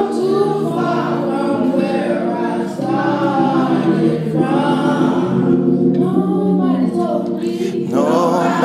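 A boy singing a slow gospel song into a microphone, stretching and bending long notes, over steady held notes underneath.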